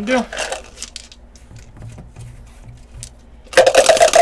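Dice clattering in and against a plastic cup: a loud rattle that starts near the end.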